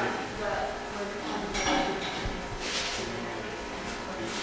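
Quiet talk in a large room, with short rustling noises about one and a half and three seconds in.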